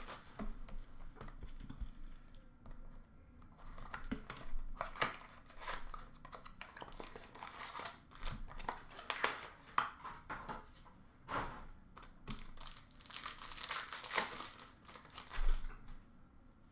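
Hockey card packs being torn open, their wrappers crinkling and rustling in irregular bursts as the cards are pulled out.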